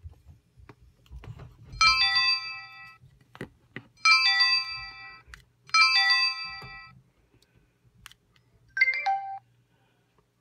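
Electronic chimes from a PenFriend 2 talking label reader's small speaker as its buttons are worked: three multi-note chimes of about a second each, then a shorter two-note beep that drops in pitch near the end, with faint button clicks between.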